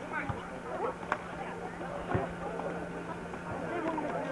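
Faint, scattered voices of players and onlookers calling on an open football pitch, with a few sharp knocks, the clearest about one and two seconds in, over a steady low hum.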